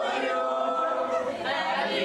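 A group of people singing a birthday song together round a candlelit cake, holding one long note for the first second and a half before moving on.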